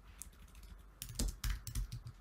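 Typing on a computer keyboard: a faint keystroke early, then a quick run of about half a dozen key clicks in the second half as a shell command is typed.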